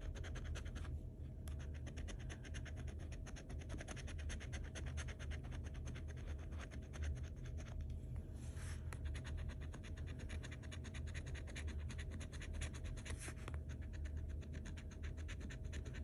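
A metal scratcher tool scraping the latex coating off a paper scratch-off lottery ticket in rapid, continuous short strokes, with a couple of brief pauses. The coating is gummy and a little hard to scratch.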